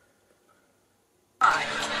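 Dead silence for about the first second and a half, then a man's voice cuts in abruptly.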